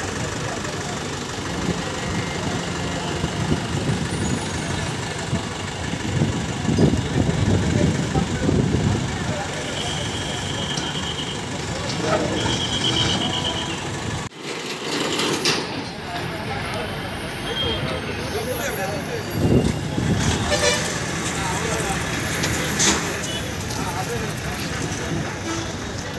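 Busy roadside ambience with heavy vehicle engines running and people talking in the background, plus two short high-pitched tones about ten and twelve seconds in.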